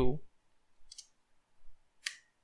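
Two short, sharp computer-input clicks, one about a second in and one near the end, from the mouse or keyboard at the desk.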